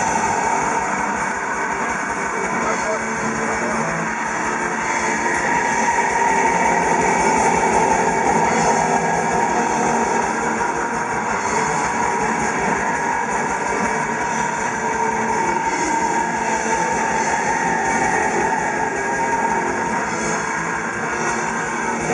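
Black metal band playing live, heard from the crowd: distorted electric guitars over fast, steady kick-drum patterns, with a vocalist's voice in the mix. The sound is loud, continuous and dense.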